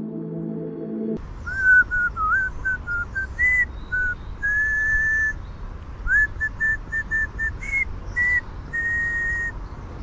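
Soft ambient music ends about a second in. Then a man whistles a casual tune: a run of short notes with a few longer held ones.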